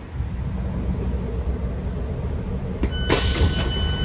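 Interior of a Class 165 diesel multiple unit at a station stop: a steady low rumble, then about three seconds in a click and a sharp hiss of air as the doors are released and open, with a steady electronic door tone starting with the hiss.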